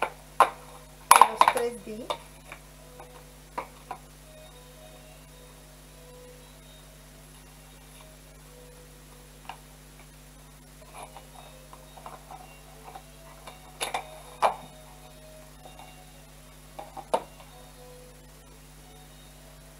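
Hands handling small craft decorations in a vase arrangement: scattered light clicks and taps, with two sharper knocks about 14 seconds in, over a steady low electrical hum.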